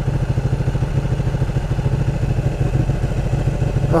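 Ducati 1299 Panigale's 1285 cc Superquadro L-twin idling, a steady low note with a fast, even pulse.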